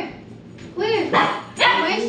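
A dog barking: three short, high barks, starting a little under a second in.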